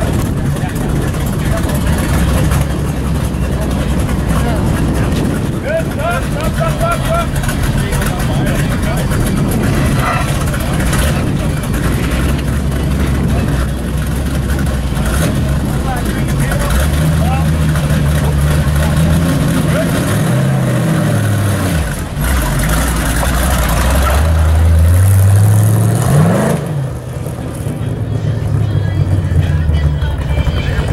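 Stock car engine idling steadily, then revved in rising and falling swells through the second half, with one long climbing rev about 25 seconds in, the loudest moment. People talk in the background.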